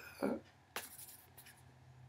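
Hands rubbing and brushing against each other and clothing, with a brief scuffing burst nearly a second in, after a short vocal sound at the start. A faint steady low hum comes in about halfway through.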